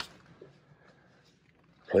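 Near silence: faint store room tone, with a man's voice starting right at the end.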